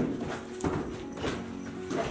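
Scuffle: a few sharp thuds and footfalls as one man shoves another to the floor, over background music.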